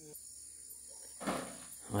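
Steady high-pitched drone of insects in the background, with a brief rustle a little past the middle.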